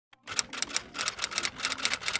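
Typewriter keys clacking in a quick, even run of about seven or eight strikes a second, a typing sound effect for text being typed onto the screen.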